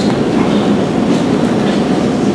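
Steady low rumble of a crowded hall's room noise, with faint murmuring from the audience.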